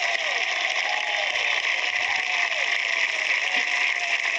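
Large crowd applauding, with voices calling out over the clapping.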